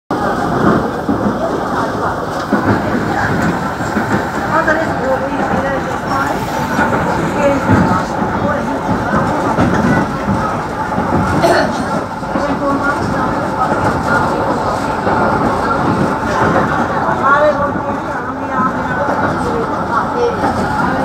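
Passenger train running, heard from inside the carriage as a steady rumble, with indistinct voices talking over it.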